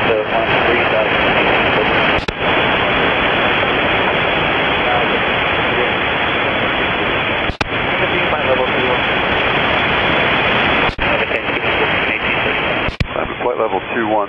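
Air traffic control radio feed full of loud, steady static hiss, with faint, unintelligible voices buried in the noise. Four sharp clicks break it at intervals as transmissions key on and off.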